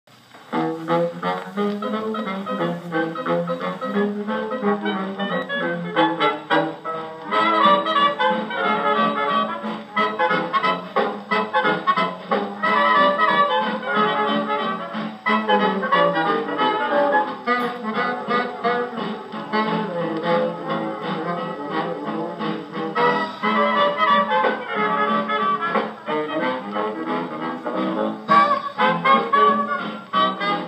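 A 1934 swing-era jazz band recording with brass and reeds (trumpets, trombone, clarinet, saxophones) playing from a 78 rpm shellac record on a 1926 Victor Credenza Orthophonic Victrola, an acoustic wind-up phonograph with a medium tone needle. The sound starts about half a second in and has no deep bass and no high treble.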